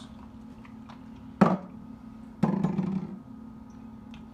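A sharp knock a little over a second in, then a longer clatter about a second later, from a bottle and measuring spoon being put down and picked up in the kitchen; a steady low hum runs underneath.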